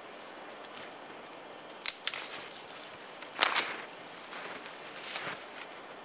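Dry dead conifer twigs being snapped off a standing tree by hand: two sharp cracks about two seconds in, then longer crackling snaps with rustling of branches about halfway through and again near the end.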